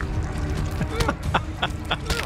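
A man laughing in a few short bursts, starting about a second in.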